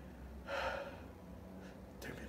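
A man's single short, audible gasping breath about half a second in.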